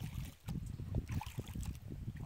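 Wind buffeting the microphone in a low, uneven rumble, with light splashing of water from kayak paddle strokes.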